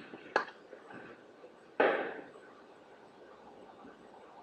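Audio from the talent-show video playing in the background: two sharp knocks near the start, then a louder, short noisy burst about two seconds in that dies away within half a second.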